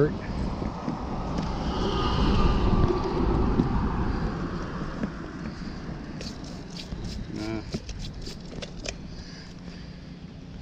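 A car passing on the road, a rushing noise that swells and fades over the first few seconds, with wind on the microphone. Later comes a run of light clicks and a brief murmured voice.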